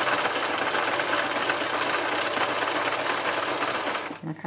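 Electric sewing machine running steadily at speed, zigzag-stitching over a length of cord held taut under the presser foot.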